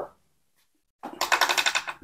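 A near-silent first second, then a rapid, even metallic rattle of clicks from hand-tool work on the opened crankcase of a Suzuki Satria 120 engine, starting about a second in.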